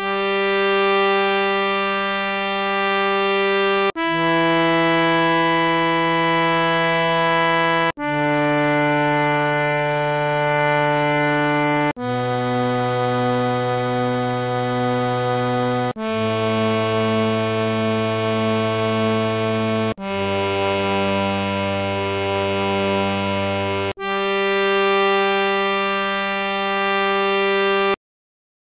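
Harmonium playing the descending scale of Raag Bhoopali in G (S' D P G R S), one held note about every four seconds with a brief break between notes.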